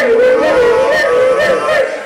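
Live rock band playing, with a wavering held lead melody on top that breaks off near the end.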